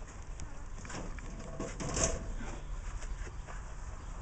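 Wire rabbit cage rattling and clicking as it is handled, with a louder clatter about two seconds in.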